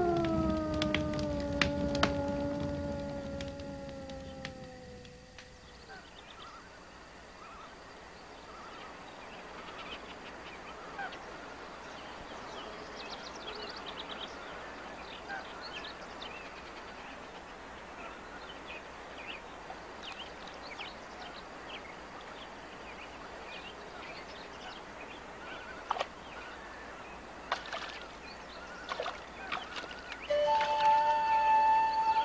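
A wolf howl: one long call sliding slowly down in pitch and fading out about five seconds in. After it, quieter outdoor ambience with birds chirping in short scattered calls.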